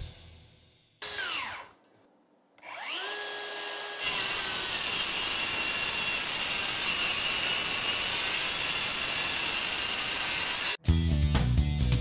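DeWalt DCS573 brushless circular saw on a 9 Ah FlexVolt battery: a brief whir that winds down, then the motor spins up with a rising whine to a steady whine and the blade rips through stacked plywood for about seven seconds. The cut stops abruptly near the end, and music follows.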